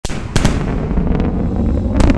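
SpaceX Super Heavy booster's Raptor engines firing as it comes down toward the tower: a loud, steady crackling rumble with a sharp crack about a third of a second in.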